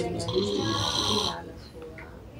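A low, indistinct voice murmuring for about the first second and a half, with a brief hiss over it, then dropping to quiet room sound.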